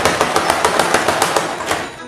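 A rapid run of sharp, evenly spaced clicks, about nine a second, fading away toward the end.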